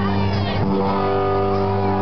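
Live rock band played through a large outdoor PA: an electric guitar holds a sustained, ringing chord, heard from within the crowd.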